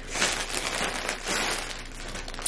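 Plastic mailer bag and plastic wrapping crinkling and rustling as a package is opened by hand, in a quick, irregular crackle.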